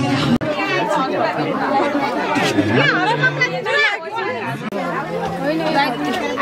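Several people talking at once: overlapping chatter.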